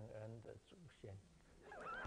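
A man's voice speaking in short bits, then near the end a man breaking into high, wavering laughter.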